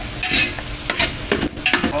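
Chopped onion and garlic sizzling in oil in a large aluminium stockpot, being sautéed. A metal spoon stirs them and scrapes and knocks against the pot several times.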